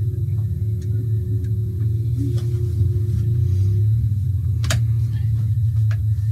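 Bolt cutters and a steel chain being worked: faint metallic clicks and one sharp snap about five seconds in, over a steady low hum.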